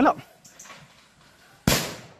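A single sharp, loud bang about a second and a half in, dying away quickly: a firecracker set off to scare wild elephants back into the forest.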